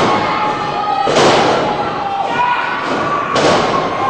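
Two heavy thuds on a wrestling ring, about two seconds apart, over shouting voices.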